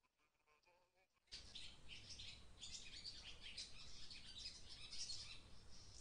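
Faint chirping of birds over a low, steady rumble, starting suddenly about a second in.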